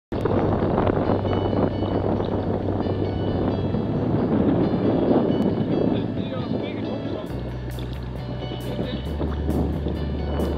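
Choppy sea water splashing close to the microphone, with wind buffeting it, under a steady low hum that drops in pitch about seven seconds in.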